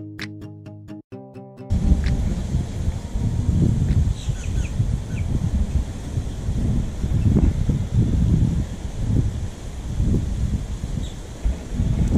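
Guitar background music for the first couple of seconds, cut off abruptly; then wind buffeting an action-camera microphone in uneven gusts, with a few faint high chirps.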